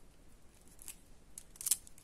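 Faint light clicks of white faceted plastic beads knocking together as a needle and thread are worked through them: one click about a second in and a louder cluster near the end.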